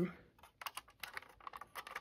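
Quiet, scattered plastic clicks and taps from a vintage Luke Skywalker Landspeeder toy as it is turned over and handled.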